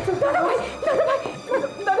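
A woman's raised, high-pitched voice crying out in short broken phrases, calling "Dadi" near the end.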